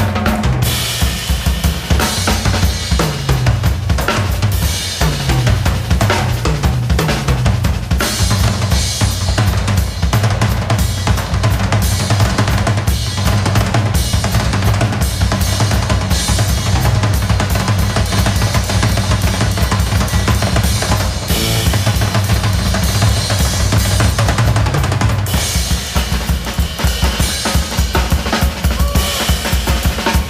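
Live drum kit played busily, with dense snare, bass drum and cymbal strokes, over a held low note that slides now and then.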